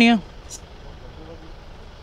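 A short hiss of air at the motorcycle's rear tyre valve about half a second in, as the pressure is being checked, over steady street traffic noise.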